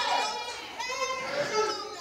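Several voices of a church congregation speaking over one another in a large hall, fainter than the preacher's voice around them: members repeating the preacher's line to the people beside them.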